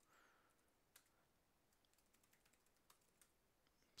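Near silence with faint computer keyboard typing: a handful of soft, scattered key clicks as a terminal command is typed and entered.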